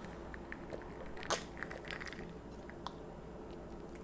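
Quiet mouth sounds of a person sipping and swallowing an iced drink from a glass, with a few small clicks and one sharper click about a second and a half in.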